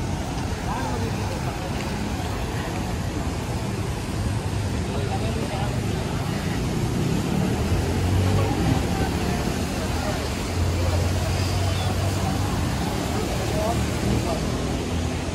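Busy city street ambience heard while walking: people talking around and car traffic, with a low vehicle rumble that comes up twice in the second half.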